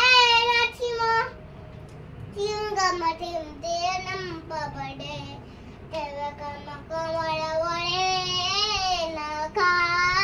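A young girl singing a devotional chant in a high child's voice. She breaks off briefly about a second in, then goes on in long, wavering held notes.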